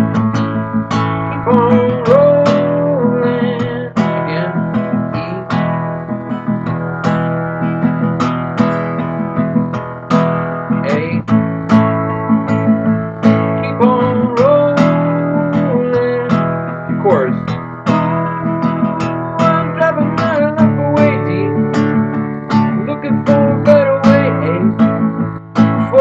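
Acoustic guitar strummed in a steady, repeating down, down-up strumming pattern, with a man singing along over it.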